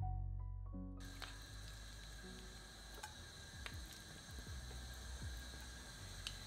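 Piano background music cuts off about a second in. After it there is faint room noise with a few light clicks and taps: a wooden spoon scooping thick chilli bean paste out of a glass jar and dropping it into a pan.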